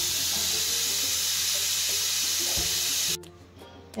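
Stovetop pressure cooker whistling, steam hissing out steadily under its weight valve, the sign that it has come up to pressure. The hiss cuts off suddenly about three seconds in.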